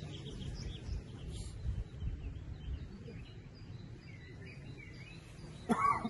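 Outdoor ambience of small birds chirping intermittently over a low rumble, with a short vocal sound, such as a cough or a word, near the end.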